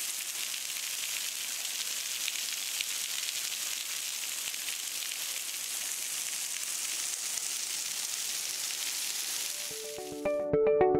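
A thin, gently flowing waterfall about 37 feet high, pouring over a rock ledge and splashing onto the rocks below: a steady, high hiss of falling water.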